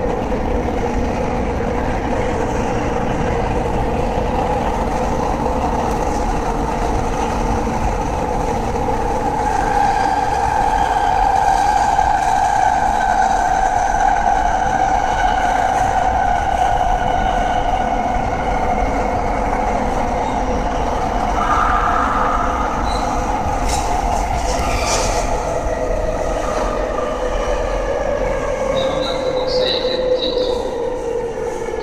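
Running sound heard aboard a Rinkai Line 70-000 series train: wheel and rail rumble under the whine of its unrenewed Mitsubishi GTO-VVVF inverter. The inverter's tone sinks slowly in the second half.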